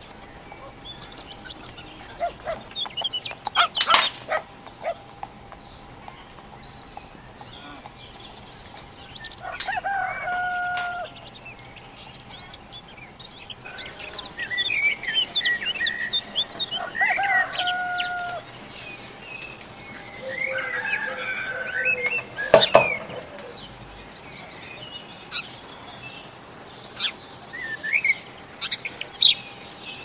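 Birds calling: a longer pitched call repeating about three times among many quick high chirps. Two sharp clicks cut through, the second the loudest sound.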